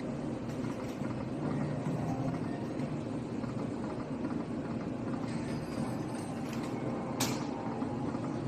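Steady low din of a casino gaming floor with slot machines running, with faint game tones from the machine and a brief sharp hiss-like click about seven seconds in.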